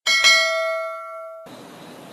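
Notification-bell chime sound effect from a subscribe-button animation: a bright ding that rings and fades, cut off abruptly about a second and a half in, then faint hiss.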